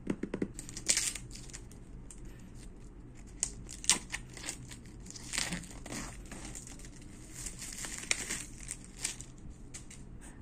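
Clear plastic shrink-wrap being torn and peeled off a smartphone box, crinkling and crackling irregularly throughout, with a few sharper snaps.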